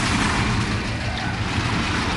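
Produced soundtrack of war sound effects: a loud, continuous heavy rumble like armoured vehicles moving, with no clear strokes or breaks.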